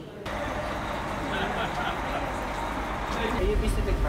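Tour bus engine running with a steady rumble, heard inside the cabin under passengers' voices. The low rumble grows heavier about a second before the end.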